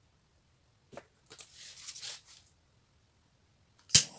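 Hands handling and setting down a painted canvas on the work table: a light knock about a second in, then a second or so of rustling scrape, and a single sharp click near the end.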